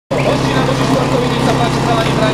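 Small engine running steadily at a constant speed, the sound of a portable fire pump running before a firefighting-sport attack, with voices talking over it.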